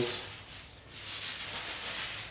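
Soft rustling and rubbing of a plastic bag as a lump of clay is pulled out of it by hand, with a brief lull just before a second in.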